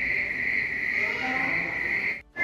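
A recorded insect song, one steady shrill trill, played over loudspeakers in an indoor exhibit room, with faint voices murmuring underneath.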